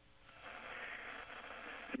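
Faint, steady hiss of an open space-to-ground radio link, thin and narrow like a telephone line. It fades in over the first half second.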